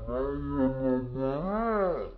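One person's voice holding a single long, drawn-out tone, nearly level in pitch, that rises and then falls off near the end.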